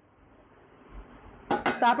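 Faint handling of a stainless-steel bowl against a steel plate covered in ground gram-flour crumbs, with a soft knock about a second in. A woman starts speaking near the end.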